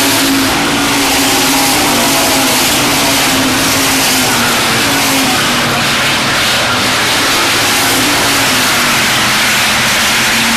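A pack of dirt-track hobby stock cars racing past at speed, several engines running hard together in a loud, steady din. The engine notes waver and fall as the cars go by.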